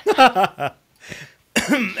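A short burst of laughter: a few quick voiced pulses in the first half second, then a voice starting again near the end.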